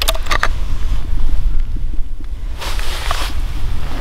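Wind buffeting the microphone, a steady low rumble, with a few sharp clicks in the first half second and a short hiss about three seconds in.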